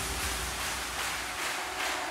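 Quiet breakdown in a hardstyle track: a soft, even hiss-like noise wash with no beat, its low bass fading out about a second and a half in.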